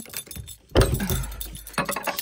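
A bunch of keys jangling and a metal padlock and chain clinking as the opened padlock is lifted off a door hasp, with a louder metal clank about three-quarters of a second in.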